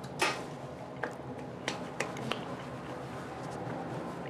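A brief swish, then four light sharp clicks spread over the next couple of seconds, over a low steady hum.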